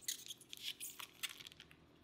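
Faint, scattered clicks and crackles of a stiff plastic packaging tray as an iPod touch is forced out of it.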